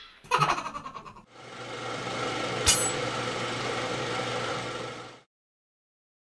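Animated logo sound effects: a quick rattle of clicks, then a steady mechanical whir with a low hum and one sharp click partway through, stopping abruptly about five seconds in.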